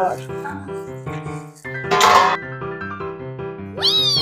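Background music with steady keyboard-like notes stepping in pitch. A brief noisy burst comes about halfway through. Near the end a short pitched sound swoops up and then glides back down.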